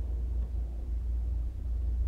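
A steady low hum of background noise with no keystrokes or other distinct events.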